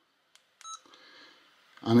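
Faint key click, then one short high electronic beep from a Yaesu FT-70D handheld radio as a button is pressed: the radio's key beep acknowledging the press, here recalling a stored memory channel.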